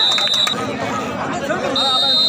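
Crowd of spectators shouting and chattering around a kabaddi court. Two short, high, steady whistle blasts sound over the voices, one at the start and one near the end.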